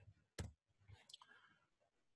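Near silence broken by a few faint clicks from a computer keyboard and mouse during code editing, with one sharper click about half a second in.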